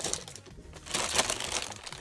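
Plastic bag packaging crinkling as a bagged set of mini reusable plastic containers is picked up and handled, loudest in the second half.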